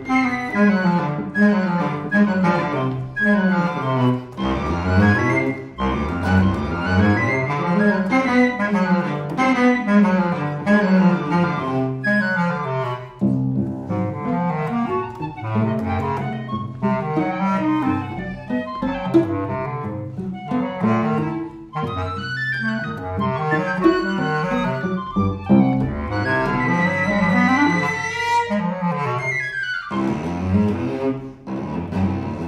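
Contemporary chamber trio of flute, bass clarinet and bowed cello playing fast, driving runs that sweep rapidly up and down in pitch, with a high held note near the end.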